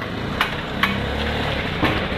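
Auto-rickshaw's small engine running as it drives slowly past close by, a steady low rumble. Three sharp taps sound over it.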